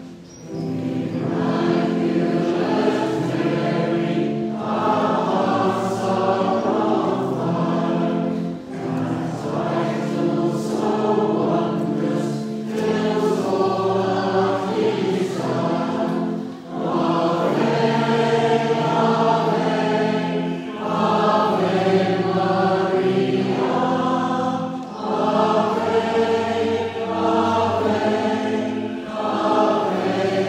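A church congregation and choir singing a hymn together to organ accompaniment, in phrases a few seconds long with short breaks between them. The singing starts about half a second in.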